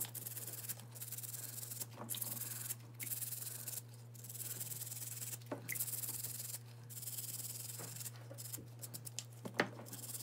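Scrubbing a small black plastic toy part by hand in soapy water: runs of rapid rubbing strokes broken by short pauses, with a few sharp clicks near the end.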